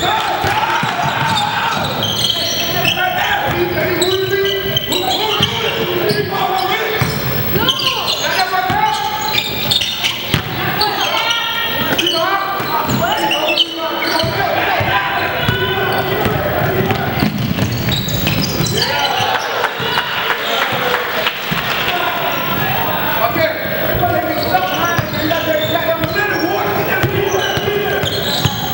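Basketball game in a large indoor gym: a ball dribbled and bouncing on the hardwood court, mixed with players' and onlookers' indistinct voices calling out.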